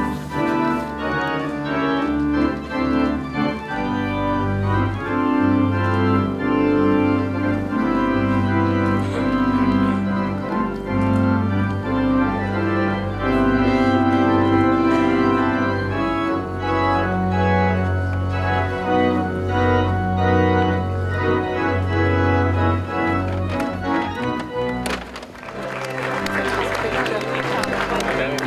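Organ playing processional music: slow, sustained chords over held bass notes. It breaks off near the end as crowd noise takes over.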